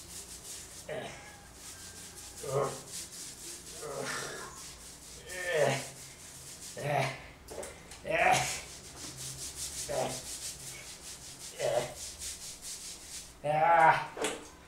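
Scrubbing and rubbing of soapy skin and lathered hair, in separate strokes about every second and a half.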